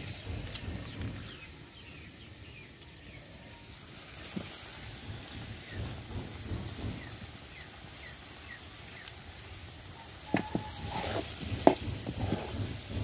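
Raw meat frying in a karahi over a wood fire, a low rumble under a hiss that builds from about a third of the way in. Near the end a spatula strikes the pan with two sharp clacks, the second the loudest sound.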